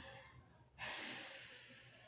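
A woman's long breath out, a soft breathy exhale like a sigh, starting about a second in and fading away.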